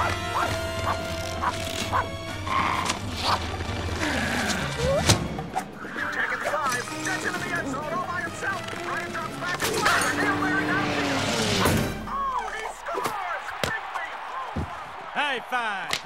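Animated-film fight soundtrack: orchestral score under a string of cartoon crashes and thuds, mixed with wordless character voices. About twelve seconds in the music drops out, leaving quick squeaky chirping sounds.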